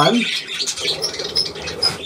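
Budgerigars chirping and chattering, with short high chirps about a second in and again near the end.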